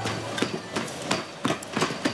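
Rapid, uneven knocks and clacks from feet striding on a manual (non-motorised) treadmill, several a second.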